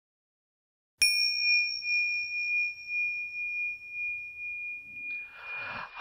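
A single bell chime struck about a second in, ringing one clear high tone that slowly fades with a gentle pulsing. Faint room noise comes in near the end.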